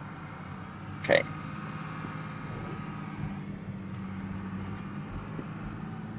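Steady low hum of a car's engine and road noise heard from inside the cabin while driving.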